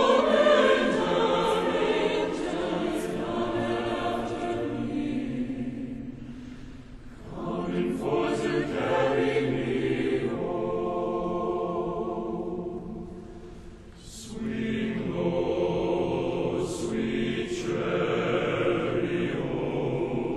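A large choir singing slow, sustained phrases in a reverberant cathedral. The singing fades away twice, about 7 and 14 seconds in, and each time a new phrase begins.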